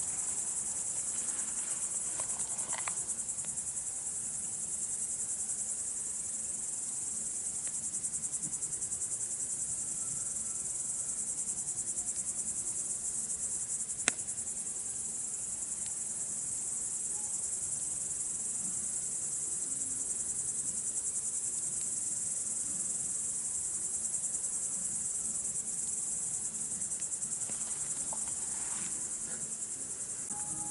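A dense chorus of crickets singing, a steady high-pitched trill that never lets up. About halfway through, the burning campfire gives one sharp crack.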